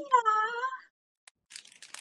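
A short, high-pitched, drawn-out vocal call that bends in pitch, like a meow, in the first second. A few quick crackling clicks follow near the end.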